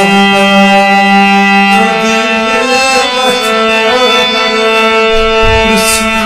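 Hand-pumped harmonium playing held notes and chords, moving to a new chord about two seconds in, with a man singing along in a Kashmiri song. A low rumble comes in near the end.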